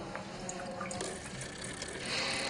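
Faint liquid sound of a drink in a glass, with a few light clicks over a steady hiss.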